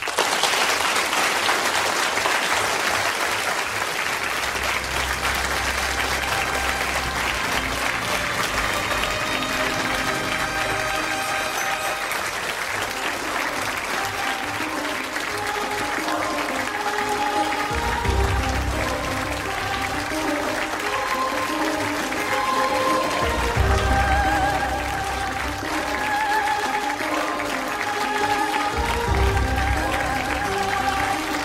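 An audience applauding steadily, with instrumental music coming in under the clapping about a quarter of the way in and growing stronger, with deep bass notes.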